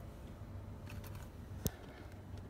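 Low steady hum inside a truck cab, with a few faint clicks about a second in and one sharp click near the end.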